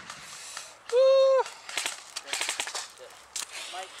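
Airsoft guns firing in quick strings of sharp cracks through the second half, with a brief, loud held tone about a second in.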